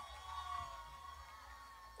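Faint background: a low hum with a few faint wavering tones, fading slightly over the two seconds.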